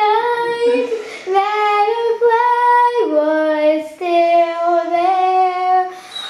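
A young girl singing long held notes that drop lower about halfway through, with a Doberman howling along.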